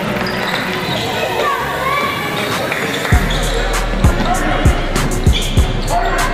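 A basketball dribbled on a hardwood court floor, bouncing about six times in the second half, roughly half a second to a second apart, over a steady low hum.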